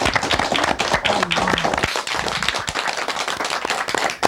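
A small studio audience applauding, a dense patter of hand claps that keeps up at a steady level.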